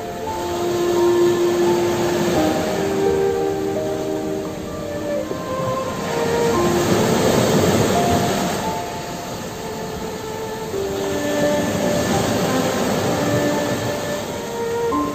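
Sea waves washing over shoreline rocks, a rushing surf that swells and ebbs several times and is loudest about seven to eight seconds in as a wave breaks on the rocks. Soft relaxation music of slow, held notes plays underneath.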